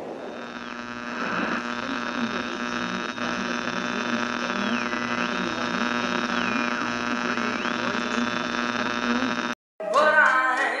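Electronic glitch sound effect: a steady electrical hum and buzz with a pulsing low tone, while a high whistling tone drops and climbs back up several times. It cuts off suddenly just before the end.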